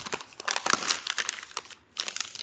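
A sheet of paper being folded and handled, crinkling and rustling in quick crackles that stop just before the end.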